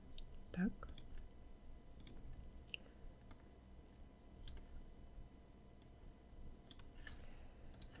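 Faint, irregular clicks of a wireless Logitech mouse, about a dozen scattered single clicks as curve points are selected and dragged in a drawing program.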